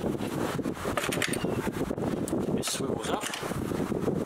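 Wind buffeting the camera microphone in a steady rumble, with a few knocks and scrapes as a carpeted wooden battery-box cover is lifted off.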